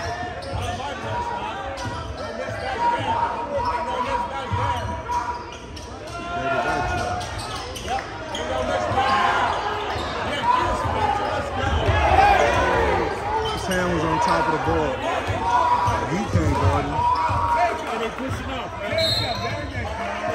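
Basketball being dribbled on a hardwood gym floor, mixed with spectators' voices and shouts that echo through the large hall.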